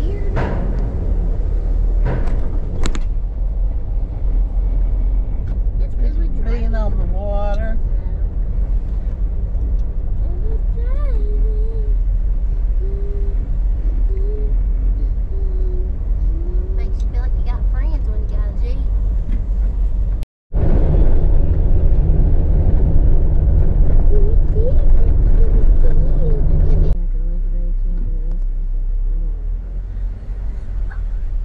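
Jeep driving: steady low engine and road rumble heard inside the cabin, with faint voices over it. The sound drops out for a moment about twenty seconds in, then comes back louder for several seconds before easing.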